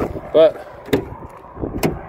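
Two sharp clicks about a second apart over a low background hiss, with a single spoken word just before them.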